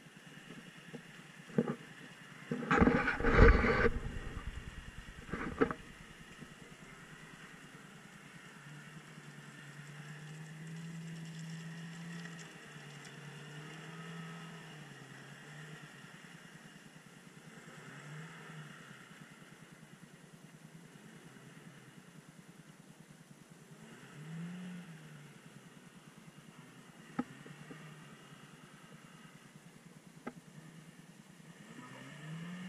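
Chevrolet Niva's engine heard at a distance as the SUV crawls through muddy puddles, its note rising and falling with the throttle. A loud rumbling burst about three seconds in, and a few sharp clicks.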